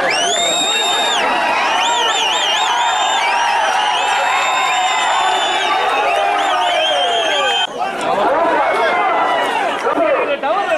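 A packed crowd shouting and whistling as a bull runs the arena. Shrill whistles hold long, high notes and warble now and then over the mass of voices. The whistling stops abruptly about three-quarters of the way through, leaving shouting.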